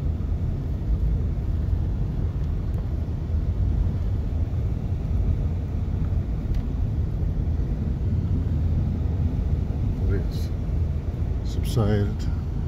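Steady low rumble of engine and road noise inside a pickup truck's cabin while driving.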